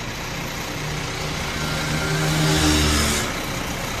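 A motor vehicle on the road passes by over a steady low engine hum, growing loudest about halfway through and then fading.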